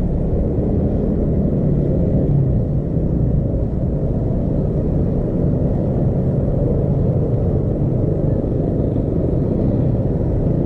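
Steady low rumble of engines in slow, dense road traffic of motorcycles and cars.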